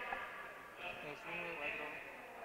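Faint, distant voices talking briefly over the hum of a room.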